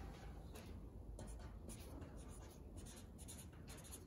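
Faint scratching of a pen writing on a sheet of paper in short strokes.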